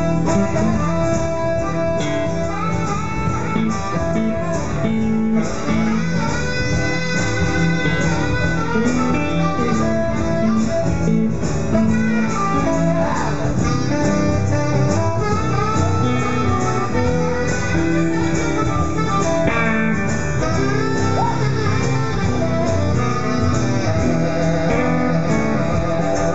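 Live band playing an instrumental break with no singing: a saxophone plays over strummed acoustic guitar and electric guitar, steadily loud throughout.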